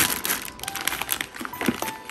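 Plastic packaging crinkling and rustling as hands press wrapped toys and packets down into a cardboard shoebox, a quick run of small crackles.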